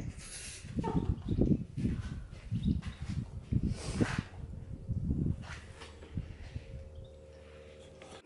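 A Dalmatian chewing and gnawing at a partly frozen raw bone, in irregular bursts that ease off near the end.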